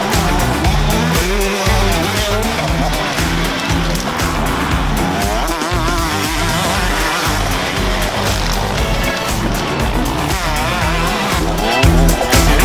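A 125 cc two-stroke motocross bike revving up and down repeatedly as it is ridden round the track, with background music with a steady beat laid over it.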